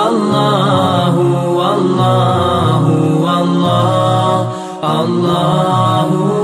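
Islamic devotional chanting with music: a voice holding long, gliding sung notes without a break, dipping briefly near the end.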